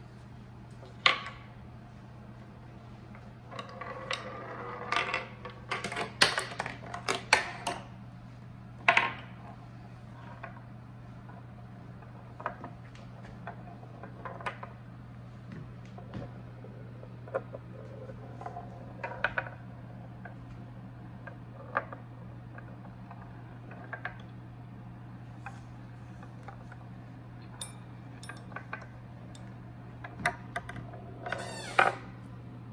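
A steel ball rolling down a wooden roller-coaster track, clicking and knocking against the wooden stick rails as it zig-zags down the plywood slopes. The knocks come thick and loudest between about 4 and 9 seconds in, then thin out to scattered ticks, over a steady low hum.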